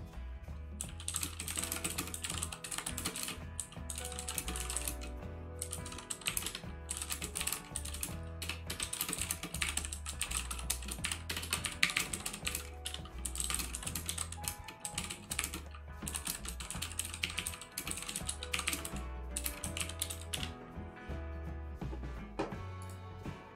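Rapid typing on a computer keyboard, a dense run of key clicks that pauses briefly now and then. Background music with a steady low bass line plays underneath.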